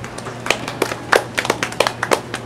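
A small audience clapping, the separate claps of a few pairs of hands distinct and uneven, starting about half a second in.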